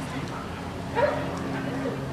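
A dog barks once, short and sharp, about a second in.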